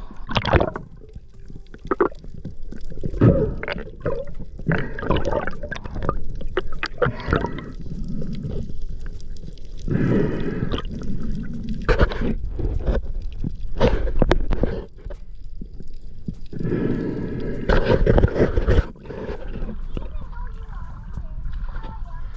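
Irregular rushes of seawater sloshing and gurgling around an action camera held at and just under the surface, with muffled, voice-like sounds mixed in.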